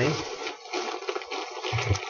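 Rustling and crackling of packing material as hands dig through a shipping box, with a short hum near the end.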